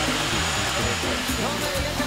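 A steady blowing noise, with music and faint voices under it.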